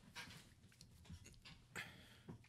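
Near silence: faint steady low room hum, with two soft breathy hisses, one just after the start and one near the end.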